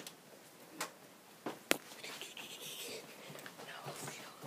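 Close handling noise: a few light clicks and knocks, the sharpest a little under two seconds in, then a second of soft rustling.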